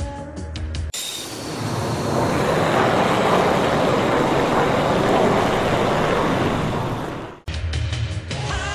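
Radio-controlled model jet making a low pass: a loud jet rush with a faint high whine, building to its loudest in the middle of the pass and easing slightly before it cuts off suddenly.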